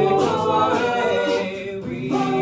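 Men's a cappella group singing in harmony, several voices holding and sliding between chords with no instruments, with a brief break in the sound just before the end.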